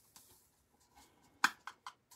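Ground coffee poured from a paper cup into a gold mesh cone filter, a faint rustle, then three quick sharp taps about a second and a half in, the first the loudest.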